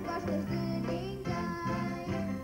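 A young girl singing a song into a microphone, with a band accompaniment underneath.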